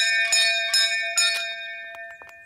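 Pull-cord doorbell on a castle door being rung: a bell struck about four times in quick succession, its tone ringing on and fading away.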